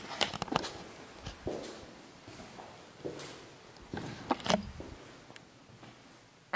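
Footsteps on a hard, gritty floor: irregular scuffs and taps, with a few sharper clicks in the first second and another cluster about four seconds in.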